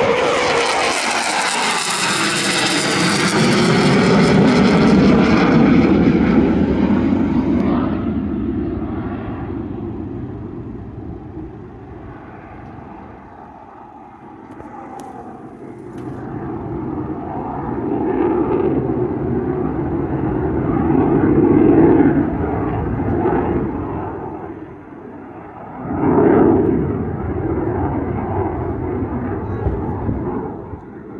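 RAF Eurofighter Typhoon's twin EJ200 jet engines passing low overhead: loud jet noise with sweeping, shifting tones for the first eight seconds, then fading. The noise swells again twice as the jet flies on, the second swell coming up suddenly near the end.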